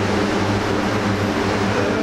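Steady mechanical noise with a low hum underneath, even in level throughout.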